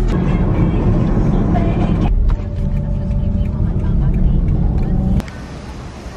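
Loud background music, likely with vocals, that cuts off abruptly about five seconds in, leaving a quieter steady background.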